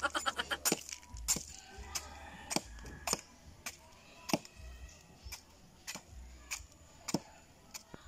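A curved bolo knife hacking and cutting at the spiky rind of a marang fruit against a wooden log: a series of sharp knocks and cracks, roughly two a second at an uneven pace.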